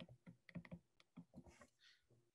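Faint, irregular tapping clicks, about five or six a second, over near silence; they stop shortly before the end.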